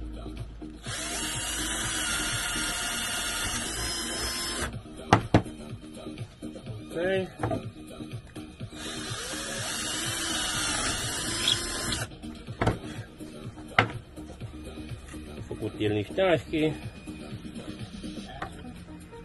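Cordless drill boring a screw hole into a pine board, running in two bursts of about four and three seconds, with a few sharp knocks between them.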